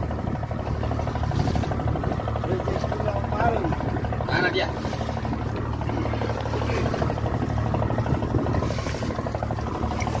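Steady low drone of the fishing boat's engine running, with faint voices now and then.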